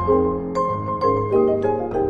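Minimalist ensemble music for two marimbas, vibraphone and two Steinway D grand pianos: a repeating pattern of struck notes over a held high tone and a steady low bass tone.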